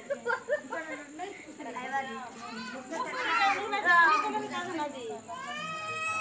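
People talking, with children's voices among them.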